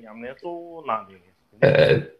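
A man's voice: soft, drawn-out speech sounds for about a second, then a short, louder burst of voice near the end.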